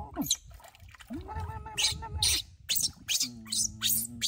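A baby monkey giving a string of short, shrill squeals as it is bathed in stream water, over a person's low, steady humming.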